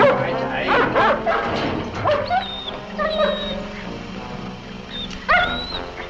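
An animal yelping and whimpering in short, high, bending cries, with a burst about a second in and another near the end, over background music.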